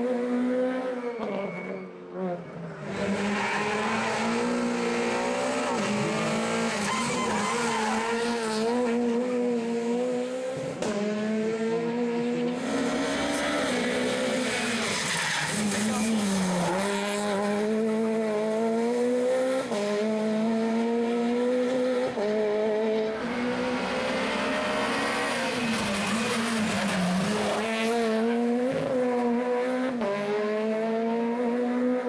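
Rally car engine running hard without a break, its revs repeatedly climbing and then dropping back through gear changes and slowing for corners, with tyre noise. The sound dips briefly about two seconds in.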